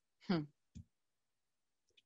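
A man's brief "hmm" over a video-call line, followed by a short faint click, then dead silence.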